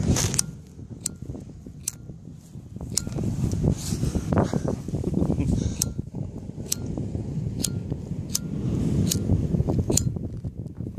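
Handheld disposable lighter struck over and over, a sharp click about once a second, against low rustling from hands handling it.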